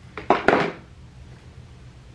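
A few quick clicks and knocks in the first second, small hard objects being handled, then faint room tone.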